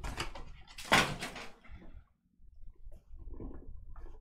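A Panini Immaculate hobby box being handled on a table: a scraping slide about a second in, then quieter rustles and taps as the lid is gripped to be lifted off.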